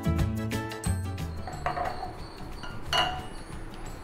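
Background music with a steady beat that stops about a second in, followed by two clinks as glass tumblers are set down on the counter.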